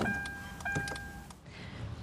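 Two electronic chimes from a Kia's dashboard as the ignition is switched on with the push-button start. Each is a steady tone lasting about half a second, the second following just over half a second after the first, with a few faint clicks.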